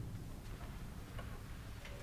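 A few faint, scattered clicks and knocks of people moving about in a small room, over a low steady room hum.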